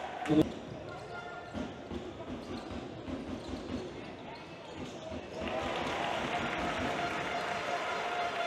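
Basketball bouncing on a hardwood court during game play, with a sharp loud impact just under half a second in and repeated knocks through the first few seconds. Crowd noise in the hall swells from about five and a half seconds in.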